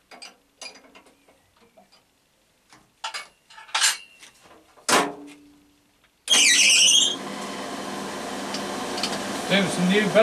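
Clicks and knocks from handling the mill drill's controls, with one louder metallic knock that rings briefly about five seconds in. About six seconds in, the Naerok round column mill drill's motor is switched on: loudest for the first moment, then settling into a steady running hum as the spindle turns.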